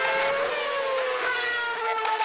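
Formula One car's V8 engine at high revs. Its pitch dips, then jumps up past the middle and slides slowly down again.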